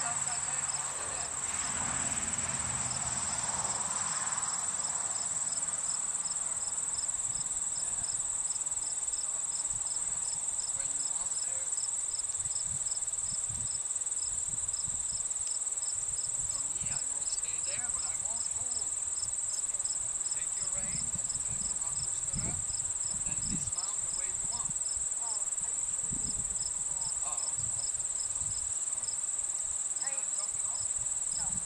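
An outdoor insect chorus: a steady, high-pitched trill from many insects, with a second insect chirping evenly at about three chirps a second over it. Scattered low rumbles come through in the second half.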